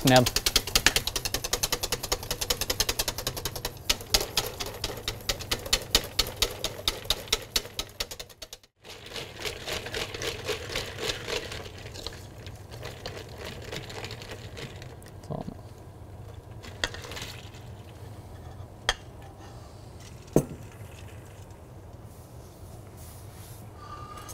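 Wire whisk beating sabayon in a stainless steel bowl set over an ice bath: a rapid, steady clatter of whisk against steel as the sauce is whisked without a break to cool it and keep it from separating. After a short break about eight seconds in, the whisking goes on more quietly, with a few single metallic knocks.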